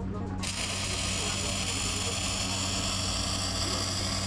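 Wire-feed welding arc on square steel tube: the arc strikes about half a second in and burns steadily, over a low constant hum.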